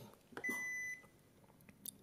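Toshiba air-conditioning wall controller giving a single electronic beep, about half a second long, as its power button is pressed, just after a soft button click.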